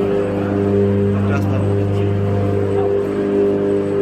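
Steady, deep electrical hum with several higher overtones, from the hydroelectric power station's power transformers.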